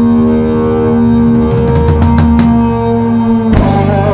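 A blues-rock band playing live, closing a song: a long held note rings over drums and cymbals. A big accented hit comes about three and a half seconds in.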